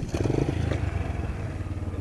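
A small dirt bike engine runs at idle with a rapid, even putter. It comes in sharply with a knock at the very start.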